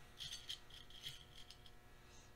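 Straight pins clinking against a small ceramic dish as they are picked out of it: a faint run of small, ringing metallic clicks lasting about a second and a half.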